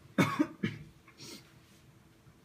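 A person coughing three times in quick succession in a quiet, reverberant hall.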